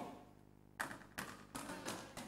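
Faint footsteps on a stage floor: about four soft taps, roughly a third of a second apart, starting about a second in.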